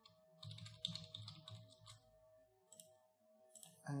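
Quiet computer keyboard typing and mouse clicks: a short run of keystrokes for about a second and a half, then a few separate clicks, over a faint steady hum.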